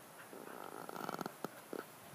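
A dog making a low, rapidly pulsing vocal sound for about a second, followed by two short clicks.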